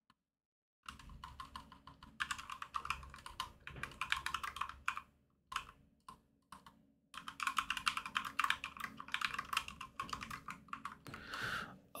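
Computer keyboard typing: quick runs of keystrokes in several bursts, with a couple of brief pauses in the middle.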